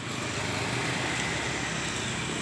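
Steady road traffic noise, an even hiss.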